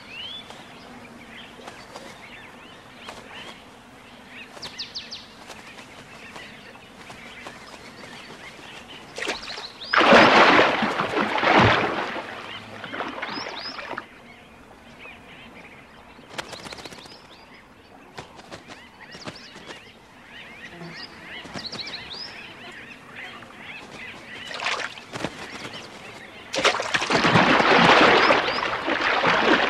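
A flock of bee-eaters calling over a pool, with short chirping calls scattered throughout. Two loud, rushing water splashes break in, one about ten seconds in and lasting a couple of seconds, another near the end, as crocodiles strike at the birds diving to drink.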